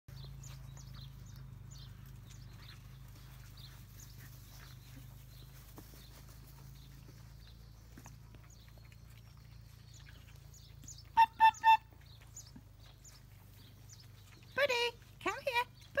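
Faint scattered high chirps over a low steady hum, then three quick, loud, evenly spaced short calls from an animal about eleven seconds in.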